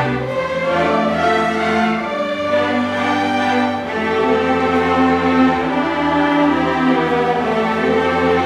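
String orchestra of violins, violas, cellos and double basses playing sustained chords, with the low bass notes changing every second or two.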